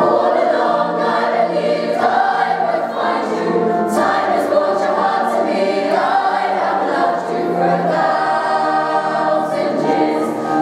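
Youth choir of girls and boys singing a slow ballad in harmony, the voices held in long phrases at a steady, fairly loud level.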